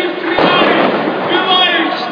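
Voices in a loud, busy scene, with a single bang about half a second in.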